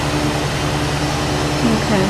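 Steady rushing hiss of an oxygen-propane glassworking torch burning, over a low steady hum.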